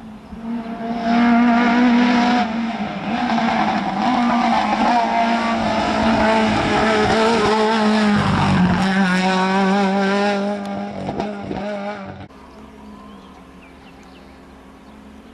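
Small hatchback rally car driven flat out on a tarmac stage, its engine revving hard, the pitch climbing and dropping through gear changes and lifts as it approaches and passes. The engine sound stops abruptly near the end.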